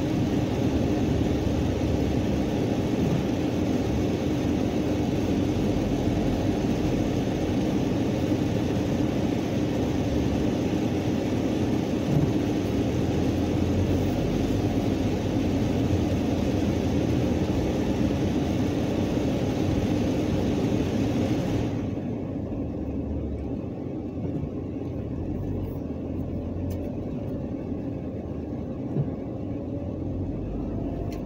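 A car driving slowly, heard from inside the cabin: a steady rumble from the engine and tyres. About three-quarters of the way through, the higher hiss cuts out abruptly and the sound turns duller.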